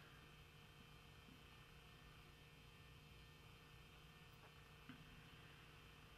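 Near silence: a faint steady low hum of the room, with one faint tick about five seconds in.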